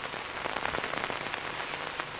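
A steady crackling hiss, thick with small clicks.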